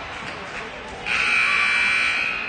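Gymnasium scoreboard buzzer sounding one steady, loud blast about a second in, lasting just over a second, over crowd chatter.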